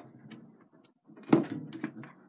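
Lid of a popcorn tin being worked by hand on its rim, with faint rubbing and then a loud scraping knock a little over a second in, followed by a few small clicks; the lid moves a bit stickily.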